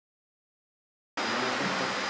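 Dead silence, then a little over a second in the sound cuts in abruptly: the steady hiss of a room full of people, with faint voices in it.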